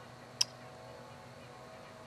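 Faint steady outdoor background with one short, sharp click about half a second in.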